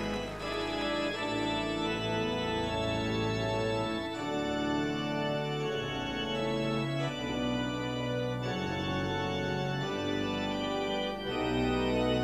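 Slow music of held organ chords, changing every second or two.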